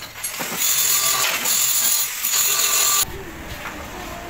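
Lathe machining a metal idler wheel: a loud, harsh metal-cutting noise with high ringing tones that lasts about two and a half seconds and stops abruptly about three seconds in.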